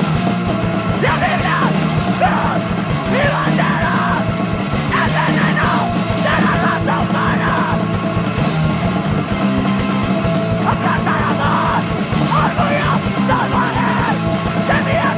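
Hardcore punk recording in the powerviolence vein: loud, dense distorted band playing with shouted vocals that come in short spells.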